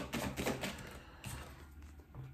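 A deck of oracle cards shuffled by hand, a quick patter of card edges clicking together, then a single card drawn from the deck.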